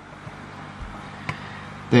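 Steady low hum and hiss of a fish room's running aquarium equipment (filters and air pumps), with a soft bump and then a single click about a second in as the camera is moved around the tank.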